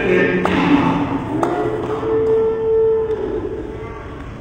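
Church worship music: singing voices with a long held note. Two sharp knocks come in the first second and a half.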